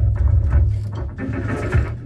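A rock band jamming in a small rehearsal room: drum kit hits and cymbals over electric bass and electric guitar, recorded on a cellphone, easing off a little toward the end.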